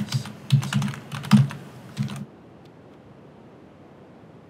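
Computer keyboard typing: a quick run of keystrokes that stops about halfway through.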